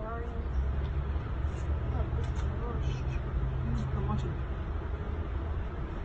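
Low, steady background rumble with faint, muffled voices, and a low hum held through the middle of the stretch; no gunshot sounds here.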